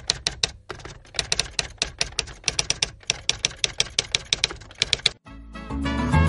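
Typewriter keystroke sound effect: rapid clicking strikes, several a second, with a brief pause near the start, stopping about five seconds in. Lively music then starts just before the end.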